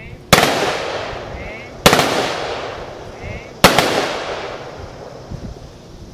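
Three-volley rifle salute of military funeral honors: three sharp cracks, each several rifles fired together, about a second and a half to two seconds apart, each trailing off in a long echo.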